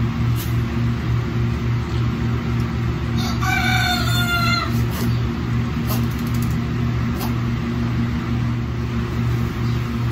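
A newborn Nigerian Dwarf goat kid bleats once, a high call of about a second and a half a few seconds in, over a steady low hum.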